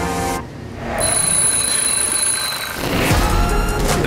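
Music breaks off, and an alarm clock rings for nearly two seconds, then stops. Near the end a loud, low rushing rumble sets in as a swimmer dives into a pool.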